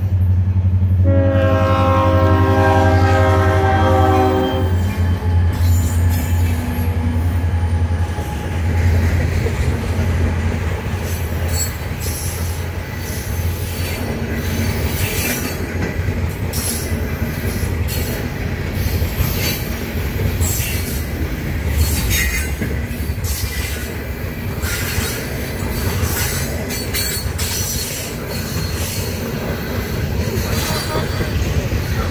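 Diesel freight locomotive horn sounding a last long blast for the grade crossing, ending about four and a half seconds in, over the locomotives' low engine rumble. Then a train of coal hopper cars rolls past with steady wheel clicking and frequent high wheel squeal.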